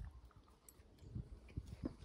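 Faint eating sounds: a knife and fork clicking and scraping on a plate, with soft low thumps of chewing close to the microphone.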